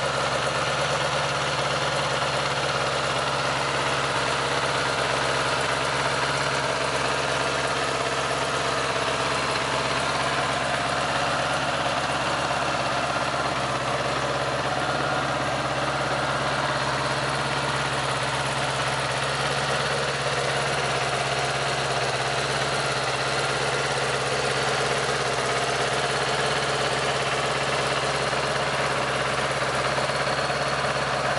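A 1978 Honda GL1000 Goldwing's liquid-cooled flat-four engine idling steadily, with no revving, shortly after being started on choke for its first run after restoration.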